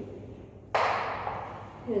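Chalk writing on a blackboard: a scratchy rasp starts about a second in and fades away.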